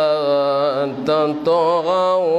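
A man reciting the Quran in the melodic chanted style of tajweed, holding long notes with wavering ornaments. There is a brief pause about a second in, then the line resumes.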